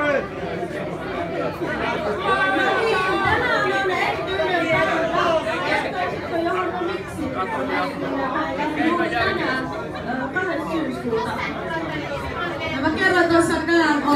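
Several people talking at once, their voices overlapping in a continuous chatter that grows a little louder near the end.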